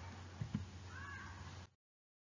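Faint room tone with a steady low hum, two soft knocks about half a second in and a brief faint wavering high sound a little later; the audio then cuts out to dead silence near the end.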